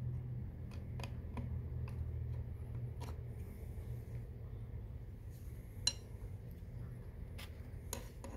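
Faint scattered clicks and clinks of a steel screwdriver and small metal parts against an industrial sewing machine's needle plate, with one sharper click about six seconds in, over a steady low hum.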